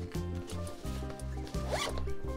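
Background music with a steady beat, and a zipper pulled once, quickly, near the end.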